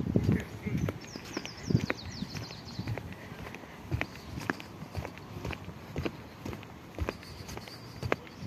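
Footsteps of a person walking at a steady pace on a hard path, about two steps a second, with a run of high chirps between about one and three seconds in.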